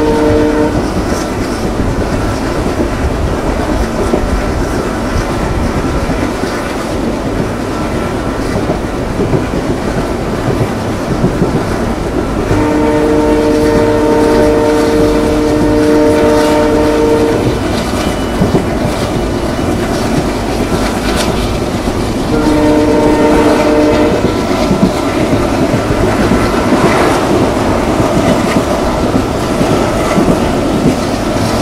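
Passenger train running at speed, heard from an open coach window: wheels clicking over the rail joints over a steady rumble. The ALCO WDG3a diesel locomotive's horn sounds a long blast of about five seconds near the middle and a shorter one about three-quarters of the way through, with the tail of another just at the start.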